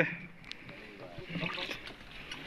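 Faint murmur of several men's voices close by, with a few light clicks and a low background hiss.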